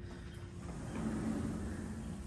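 Steady outdoor background noise: a low rumble with a faint constant hum, swelling slightly about a second in.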